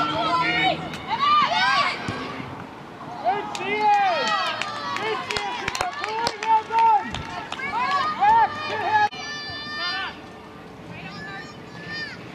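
Voices shouting and calling across an outdoor football pitch during play, with a few sharp knocks among them. About nine seconds in the sound drops suddenly to quieter calls.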